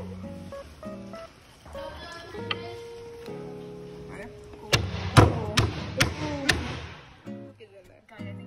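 Background music plays throughout. About halfway through comes a quick run of five or so sharp knocks, hands striking a wooden slat and board, with voices among them.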